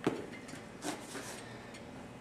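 Cable pulley machine knocking as a rope attachment is pulled down to the floor: one sharp knock right at the start and a softer one about a second in.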